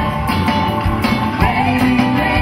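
Live band playing rock-style music, with guitar and drums.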